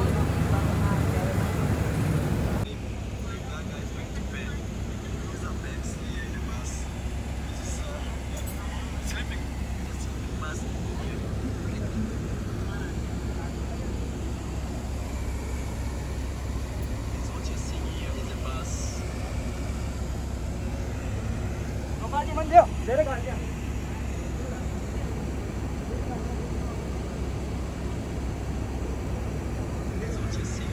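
Steady low rumble of a sleeper bus's engine and road noise inside the passenger cabin, louder for the first couple of seconds, with faint voices and one short loud vocal sound about three-quarters of the way through.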